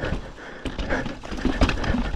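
Mountain bike riding down a rocky trail: tyres knocking over rocks and the bike rattling with a quick, irregular run of knocks and clatters.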